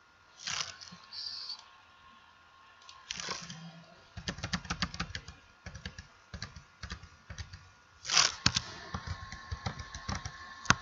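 Typing on a computer keyboard: a few scattered key clicks, then a quick run of keystrokes from about four seconds in to the end. A few short hissy noises break in, the loudest about eight seconds in.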